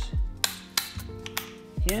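Sharp plastic clicks of a Festool Domino DF 500 Q's depth-stop slider being set for a 20 mm mortise depth: two clicks about half a second in and a couple of fainter ones later, over background music.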